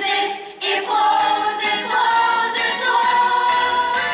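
A stage cast singing together in chorus over musical accompaniment, with a brief break about half a second in and then a long held note.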